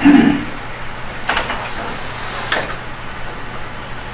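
A short low thump right at the start, then two brief sharp clicks about a second apart, over a steady low electrical hum. These are handling noises at a courtroom lectern.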